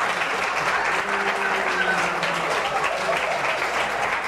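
A small studio audience applauding, with steady clapping throughout.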